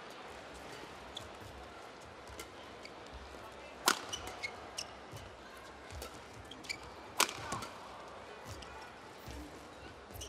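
Badminton rackets striking a shuttlecock in a rally: a series of sharp cracks, two much louder than the rest at about four and seven seconds in, over the steady hum of an arena crowd.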